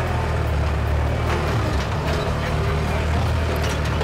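Bobcat skid-steer loader's engine running steadily as the machine drives forward, with irregular clanks and rattles over the engine note.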